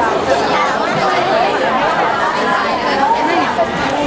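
Many voices talking over one another in a hall: steady crowd chatter with no single speaker standing out.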